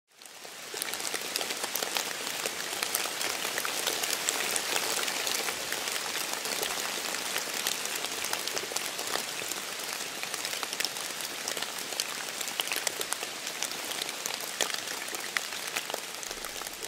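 Steady rain falling on a pond's surface, an even hiss dotted with many small drop ticks, fading in over the first second.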